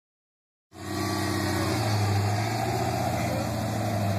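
Lifted Chevy Blazer's engine running steadily at low revs, a deep even hum with no revving; the sound starts just under a second in.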